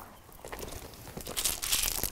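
Gravel and dry soil crunching underfoot as a man takes a few steps and crouches, then a hand scraping at the ground, louder in the second half.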